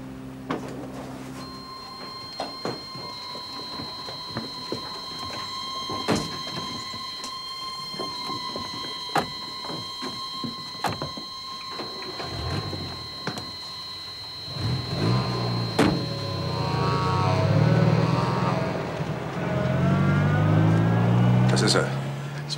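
A thin, high, held tone of suspense music, with scattered knocks and clicks. From about halfway, a low, wavering engine sound and muffled voices grow louder and carry on to the end.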